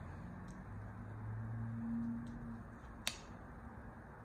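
Light clicks and taps of paper cards and clip embellishments being handled and pressed onto a tabletop, with one sharp click about three seconds in. Under them, a low drone swells and fades over about two seconds.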